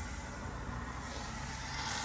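Steady background noise of distant road traffic.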